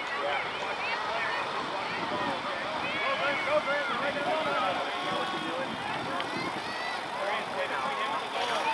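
Overlapping, indistinct voices of young players and people on the sideline, calling and chattering across the field, with no clear words.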